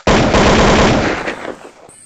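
Edited-in transition sound effect: a loud, rapid rattle of many sharp strikes that starts suddenly and fades away about a second and a half in.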